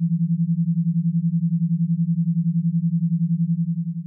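A binaural beat: a low, pure sine tone whose loudness pulses rapidly and evenly as two slightly detuned tones beat against each other.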